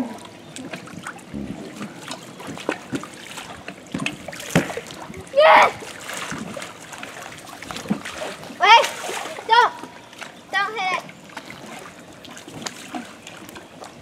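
Pool water splashing and sloshing against an inflatable water-walking ball as it rocks and rolls on the surface, with small knocks on the plastic. Several short, high-pitched children's shouts break in during the second half.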